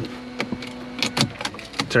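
Car key and fob clicking and rattling as the key is handled and put into the ignition, several sharp clicks, over a steady low hum that stops about a second in.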